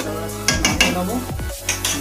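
Metal spatula clinking and scraping in a metal kadai of simmering egg curry, with sharp clinks about half a second in and near the end. Electronic background music with a falling bass runs under it.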